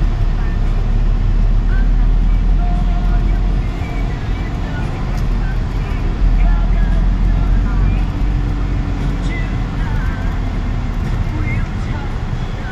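Steady low rumble of a vehicle's engine and tyres heard from inside the cabin while driving slowly.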